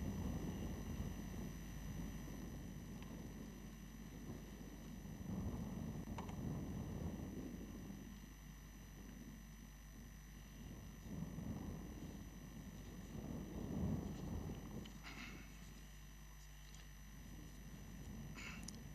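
Faint, uneven low rumble that swells and fades several times, over a steady electrical hum, from an open outdoor microphone; a few faint ticks.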